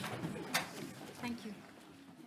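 Indistinct voices of people talking in a conference room as a press conference breaks up, with a sharp knock about half a second in; the sound fades away toward the end.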